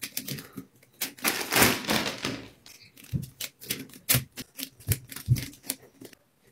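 Rubber bands stretched and let go one after another onto a watermelon's rind: a quick, uneven run of sharp snaps, with a longer, louder scratchy stretch about a second in.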